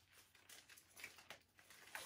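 Near silence, with a few faint, small clicks of a handbag's metal strap clip being handled.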